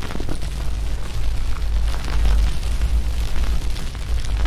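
Outro logo sound effect: a deep, continuous rumble with scattered crackles above it.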